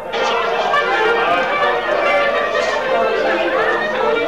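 Many people talking at once around a table: loud, overlapping chatter.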